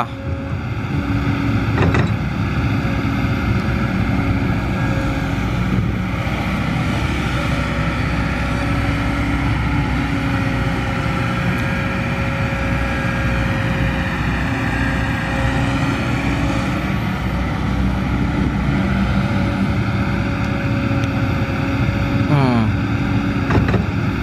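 Kobelco SK200 hydraulic excavator's diesel engine running steadily under load as the machine digs and swings buckets of soil.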